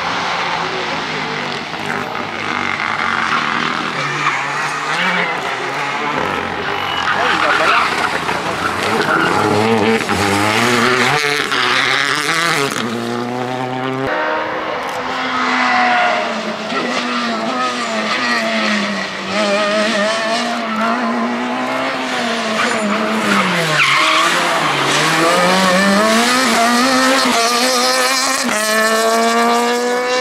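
Rally car engines at racing speed passing one after another, the pitch climbing as each revs out and dropping at gear changes and lifts, with a clear rising rev near the end.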